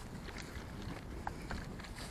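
Footsteps of a walker and a leashed dog crossing dry, crumbly ploughed mud, with a few faint ticks over a steady low rumble.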